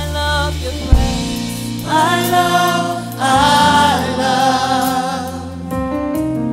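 Live gospel worship music: a lead singer and a group of backing vocalists hold long sung notes over sustained keyboard and bass, with one sharp hit about a second in.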